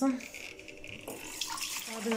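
Water from a kitchen tap running steadily into a jug held under it, filling it with water to boil for coffee; the sound fills out a little about a second in.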